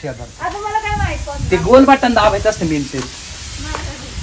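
A man's voice speaking in short phrases, over a faint steady hiss.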